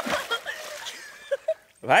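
A woman's laughing voice trailing off, then two faint clicks, then a short shout near the end.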